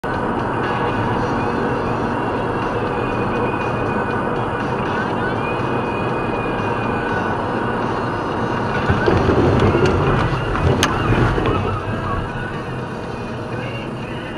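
Steady road and tyre noise inside a moving car, picked up by a dashcam, with music playing faintly underneath. The noise swells and roughens around nine to eleven seconds in, with a sharp click near the end of that stretch.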